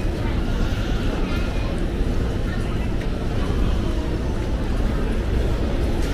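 Large airport terminal concourse ambience: a steady low rumble with the indistinct voices of people passing by.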